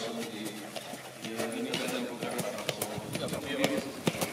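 Indistinct voices of people talking, with scattered sharp clicks from a harness-racing horse's hooves on paving stones as it walks.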